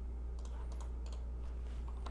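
A handful of light, scattered clicks from a computer mouse and keyboard, heard over a steady low hum.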